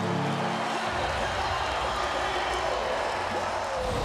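Arena goal horn sounding over crowd noise after a home goal; the horn's steady low tone cuts off about a second in, leaving the even din of the crowd.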